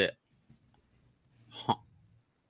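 A man's voice finishing the word "it", then a pause and one short voiced sound from a person near the end.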